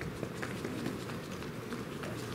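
Footsteps, quick and irregular, over a low steady room hum.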